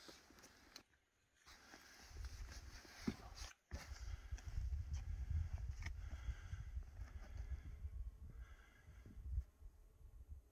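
Faint outdoor sound of a hiker on a rocky ridge: wind rumbling on the microphone from about two seconds in, with a few footsteps and scuffs on stone. The first two seconds are near silent.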